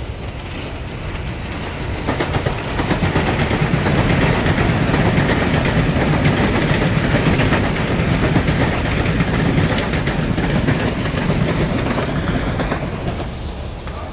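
SuperVia Série 3000 electric multiple unit, two sets coupled, passing at speed: wheel and rail noise with a clatter of wheels over the track swells as the train comes by, stays loud through the middle, and fades near the end.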